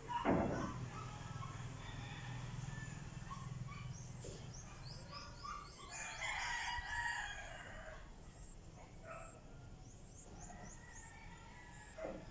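A rooster crowing once, about six seconds in, with small birds chirping high up around it. A brief loud sound sliding down in pitch opens the stretch.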